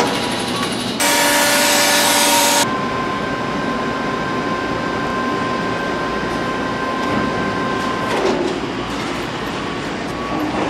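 Assembly-plant machinery running: a loud hiss for about a second and a half shortly after the start, then a steady high-pitched whine that stops about eight seconds in, over constant shop-floor rumble.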